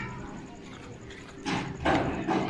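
A dog barking: two short barks near the end, the second louder.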